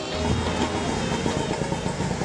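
A vehicle engine running with a steady low rumble, mixed under the song's intro music.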